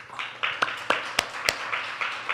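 A small audience clapping in welcome, with a few sharp, distinct claps about three a second standing out from the rest.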